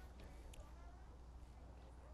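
Near silence: a steady low hum, with a faint click about half a second in.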